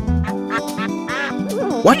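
A cartoon duck quacking: a few short quacks, over light background music.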